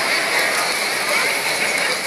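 Crowd chatter: many voices talking and calling over one another at once, with no single voice standing out.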